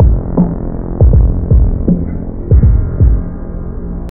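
Hardcore boom bap hip-hop beat: deep kick drums with a dropping pitch hit about every half second over held low bass and sample notes.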